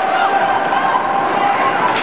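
Ice hockey rink ambience during play: spectators' voices and shouts over a steady hum, with a single sharp knock near the end.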